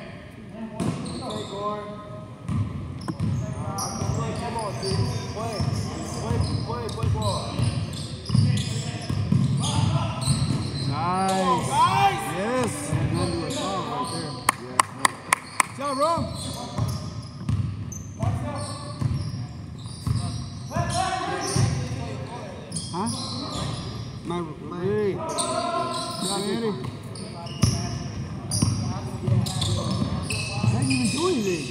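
Basketball game on a hardwood gym floor: the ball bouncing, sneakers squeaking in short chirps, and indistinct players' voices, all echoing in a large gymnasium. A little past the middle comes a quick run of about six sharp clicks.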